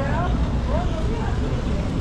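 Outdoor street ambience: a steady low rumble with faint, scattered voices of passers-by.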